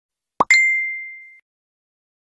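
Cartoon-style animation sound effect: a quick rising pop, then a bell-like ding on one pitch that rings and fades out over about a second.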